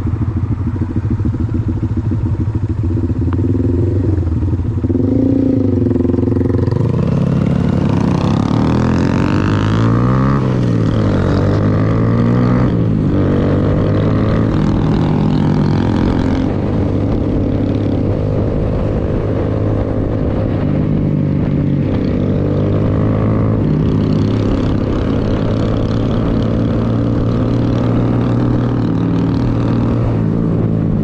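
Honda Grom's small single-cylinder engine idling, then pulling away from about seven seconds in, its pitch climbing and dropping with each gear change before settling into a steady cruise.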